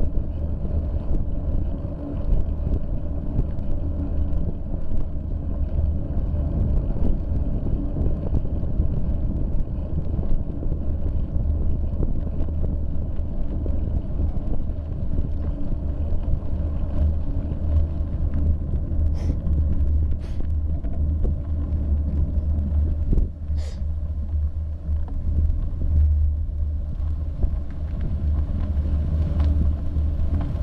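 Wind buffeting the microphone of a bicycle-mounted camera while riding, a steady low rumble with tyre noise from the road surface. Three short high squeaks come about two-thirds of the way through.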